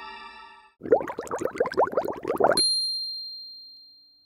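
Soft sustained music fades out, then a short burst of laughter of about eight quick pulses that stops abruptly, followed by a single high, bell-like ding that rings on and slowly fades.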